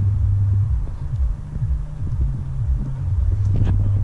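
Wind buffeting the camera's microphone: a loud, low rumble that eases a little mid-way and then picks up again.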